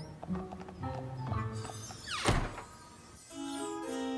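Cartoon soundtrack: short low music notes, then a single loud thunk about two seconds in. Near the end, music with long held droning tones begins.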